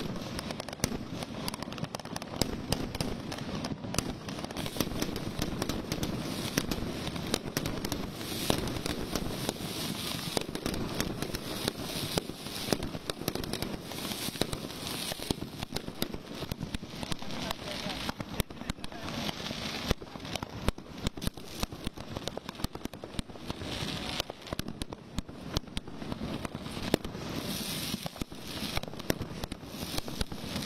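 Firecrackers packed into a burning Ravana effigy going off in a dense, unbroken barrage: many sharp bangs over continuous crackling.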